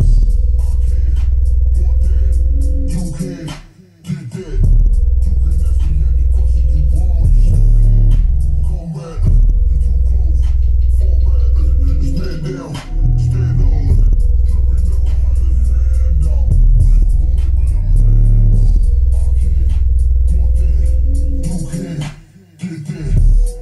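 Alpine SWT-12S4 12-inch subwoofer playing a bass-heavy hip hop track loud, its cone pumping out long stretches of very deep bass that drop out briefly a few times.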